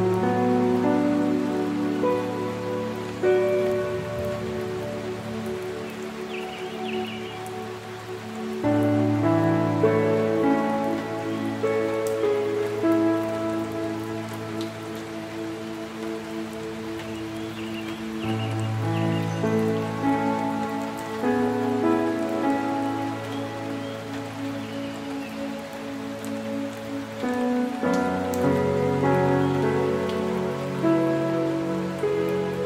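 Slow, soft instrumental music of long held chords, the bass note changing about every nine seconds, over a steady, even hiss.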